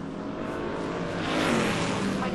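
A vehicle passing by, its noise swelling to a peak about one and a half seconds in.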